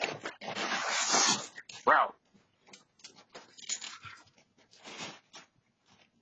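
A loud burst of rustling noise in the first second and a half, then a dog gives one short, high-pitched cry that bends up and down, about two seconds in. After that only faint, scattered sounds.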